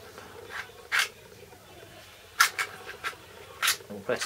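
Plastic clicks of a panel-mount PID temperature controller's mounting clip being slid along its plastic case and handled: several short sharp clicks, the loudest about two and a half seconds in.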